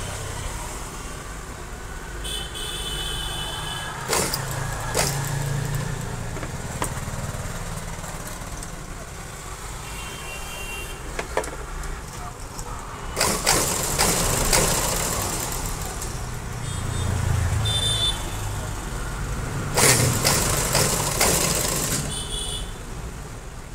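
A sewing machine stitching piping along a kameez seam in several short runs, with pauses between them as the fabric is repositioned.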